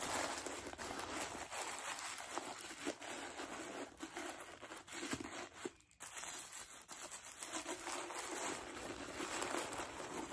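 Tissue paper crinkling and rustling as it is handled and stuffed into a cup, irregular throughout, with a brief pause about halfway through.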